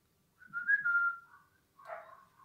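A short whistle about a second long: one held note that lifts slightly in pitch before falling away. A fainter, lower sound begins near the end.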